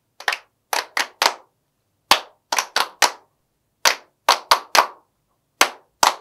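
Three people clapping in unison a body-percussion rhythm, 'tan, ta-ta-tan': one clap, a short gap, then three quicker claps. The figure repeats three times, and the fourth begins near the end, with no piano.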